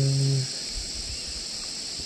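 A steady, high, even drone of a tropical forest insect chorus. A man's voice holds one long pitched note that ends about half a second in.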